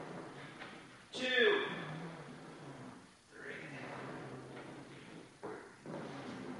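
A man's voice calling out a single exercise rep count about a second in, with faint breathing after it and a steady low hum underneath.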